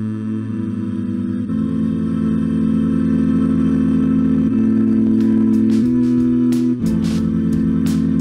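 A steady hummed voice run through the Manipulator vocal plugin, which turns it into held, synthetic-sounding chords played from MIDI. The chord changes about five times, every one to three seconds.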